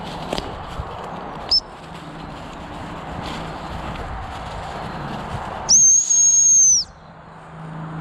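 Gundog training whistle blown by the handler: a brief high pip about a second and a half in, then one long, steady, high-pitched blast lasting a little over a second, past the middle.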